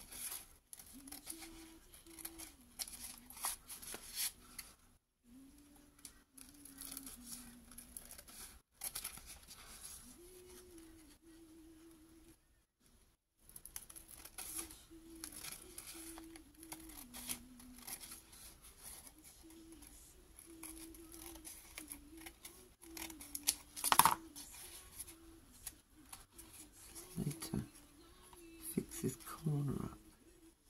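Scissors snipping through glued paper while thin napkin tissue rustles and crinkles, with one louder snap about three-quarters of the way through. A voice hums a tune softly under it.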